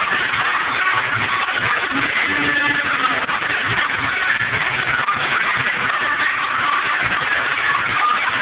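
Loud, muffled music filling a nightclub, mixed with crowd noise.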